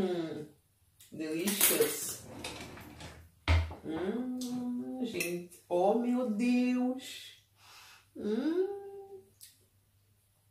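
Metal cutlery clinking as a fork is taken from a kitchen drawer, with a single sharp knock about three and a half seconds in as the plate of cake is handled, over a woman's wordless 'mmm' voice sounds.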